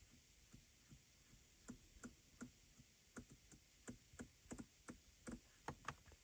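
Faint, irregular clicks from a BMW iDrive rotary controller clicking through its detents as it scrolls a menu list. The clicks come more often in the second half.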